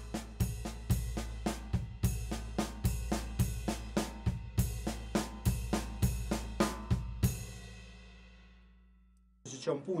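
Drum kit played in a fast, repeating nine-stroke quasi-linear fill: hand strokes on cymbal and snare woven with bass drum beats, for about seven seconds. The final stroke rings out and fades over the next two seconds.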